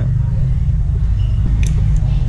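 A piston-pin circlip on a Yamaha Exciter 150 piston snapping into its groove under needle-nose pliers, a single sharp click near the end: the click means the clip is seated. A steady low hum runs underneath.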